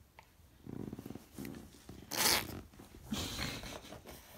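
A baby making several short, rough, breathy vocal outbursts, grunts and huffs of excitement; the loudest comes about halfway through.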